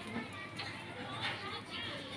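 Quiet, indistinct talking over background music.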